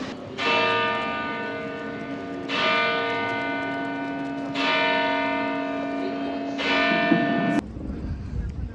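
A single church bell striking four times, about two seconds apart, each stroke ringing on and fading slowly before the next; the sound cuts off suddenly near the end.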